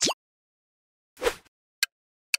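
Quiz-game sound effects: a short rising pop right at the start as the last answer option appears, then a whoosh about a second in as the countdown bar comes up, and the first sharp tick of the countdown timer near the end.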